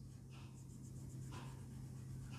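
Marker pen drawing on a whiteboard: two faint strokes, the first just after the start and the second past the middle, over a steady low hum.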